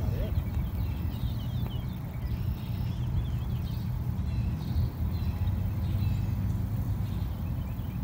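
Steady low rumble of wind on the microphone, with small birds chirping several times in the first half.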